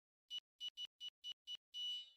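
Synthesized outro sting: a run of short, high electronic beeps that quicken, about six in all, then a longer final tone that fades away.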